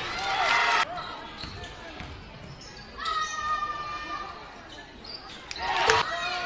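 Basketball game sounds in a gym: girls' voices calling out on court, cut off abruptly about a second in by an edit. Then a basketball bouncing on the hardwood floor, a steady high squeal lasting about a second midway, and more shouting near the end.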